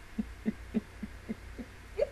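A woman's stifled laughter: a run of short, low closed-mouth chuckles, about three or four a second, ending with a louder one.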